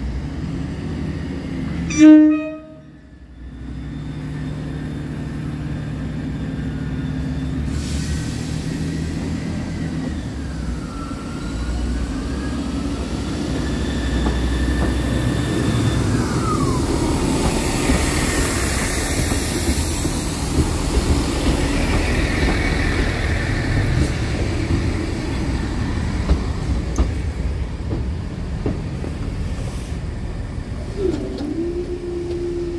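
Diesel passenger train sounding one short, loud horn blast about two seconds in as it approaches the crossing. It then runs past, its engine and wheel noise building and holding steady as the coaches go by, with thin squealing tones gliding down in pitch partway through.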